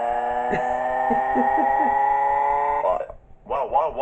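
A cartoon character's synthesized voice wailing in a single long, steady crying note that cuts off suddenly about three seconds in.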